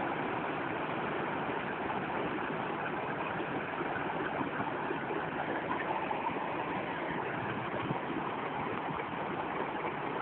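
Water from the upper chamber pouring through the sluices of a wooden lock gate into a stone canal lock chamber, filling it. The churning white water makes a steady, unbroken rush.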